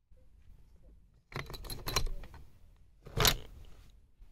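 Curtain hooks sliding and jingling along a wooden curtain pole as curtains are drawn open. The sound comes in two pulls: a rattle of clicks about a third of the way in and a sharper one near the end.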